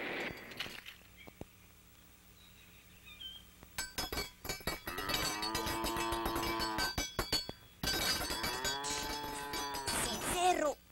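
Cartoon sound effects: a cowbell clinking in quick rattles together with a cow's drawn-out moo that rises and falls in pitch, in two bouts after a few quiet seconds.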